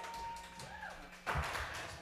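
Faint tail of live band music dying away as a few lingering held tones. Just over a second in, a short burst of noise like a thud.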